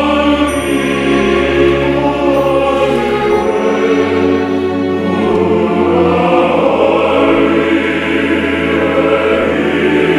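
Men's choir of classical singers singing together in full voice, holding sustained chords. The bass notes move to a new chord about three and a half seconds in.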